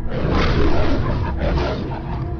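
A beast's roar as a film sound effect for a winged lion creature, starting suddenly and loud, with a short break about one and a half seconds in before it tails off, over a dark music bed.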